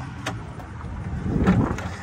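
EZGO TXT electric golf cart pulling away from a standstill, its drive noise building as it picks up speed.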